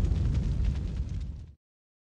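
Tail of a cinematic boom sound effect on a TV channel's logo outro: a deep rumble fading away, cut off abruptly about a second and a half in.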